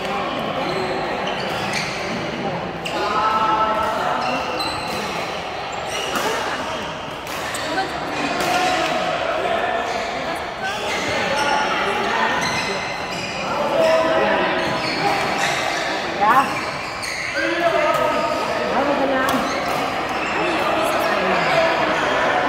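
Badminton rackets striking shuttlecocks again and again on the surrounding courts, with a few short shoe squeaks on the court floor and players' voices, all echoing in a large hall.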